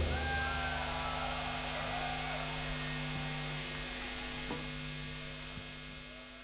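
Steady electrical hum from the stage's guitar amplifiers and PA left ringing after the band stops, under faint crowd noise with a few shouts near the start, slowly fading down.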